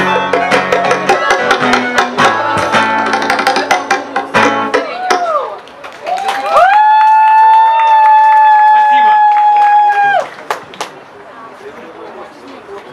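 An acoustic reggae band ends a song: strummed acoustic guitars and percussion stop abruptly about five seconds in. Then the singer holds one long high note into the microphone for nearly four seconds before it breaks off.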